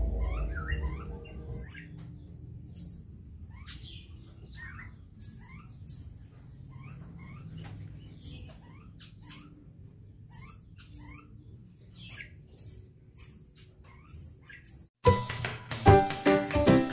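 A young sunbird calling in a long series of short, sharp high chirps, each sliding down into a lower note, coming closer together in the second half, over faint background music. Near the end, loud music cuts in.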